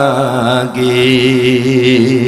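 A man's voice singing a devotional Bengali song into microphones over a public-address system: a wavering melodic line that breaks off briefly about a third of the way in, then one long held note with a slow vibrato.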